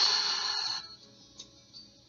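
A long, breathy exhale that fades out under a second in, then soft background music.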